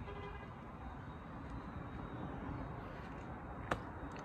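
Steady low roadside rumble of traffic and wind, with a brief faint tone at the start and a single sharp click just before the end.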